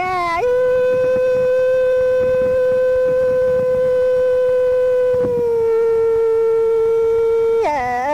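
A singer holds one long, steady note, then steps slightly lower about five seconds in and holds again, before quick-moving sung phrases return near the end.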